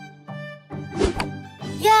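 An arrow striking the edge of a target board with a single thunk about a second in, off the centre, over background music with held string notes.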